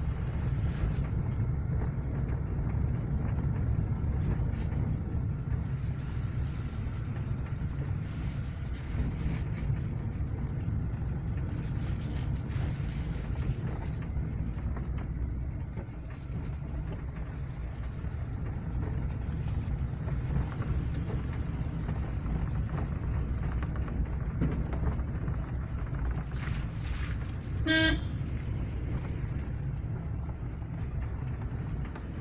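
Car interior noise while driving: a steady low rumble of engine and tyres. A vehicle horn toots once, briefly, near the end.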